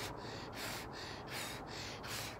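A child's short breathy puffs through the mouth, repeating about three times a second.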